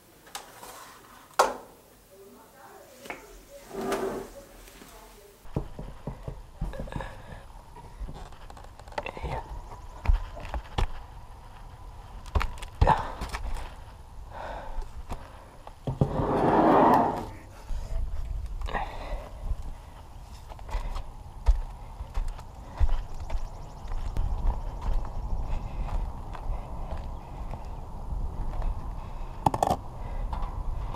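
Handling noises: scattered knocks and clicks as large glass jars are lifted, set down and carried out through a window, with a louder scraping rush about 16 seconds in. In the second half a low wind rumble sits on the microphone.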